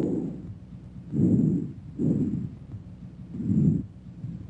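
Recorded normal breath sounds heard through a stethoscope: rushing breaths in and out in swells under a second long, each followed by a short gap. Bronchial breath sounds are being played at the start and vesicular breath sounds by the end.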